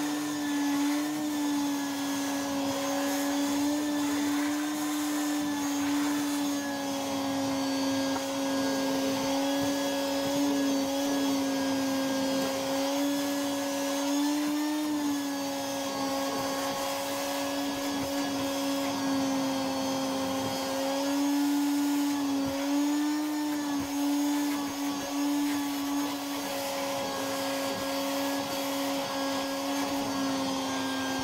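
Wet/dry vacuum motor running steadily with a strong hum, its hose vacuuming the leftover water out of a toilet tank. The pitch dips briefly now and then as the load on the motor changes.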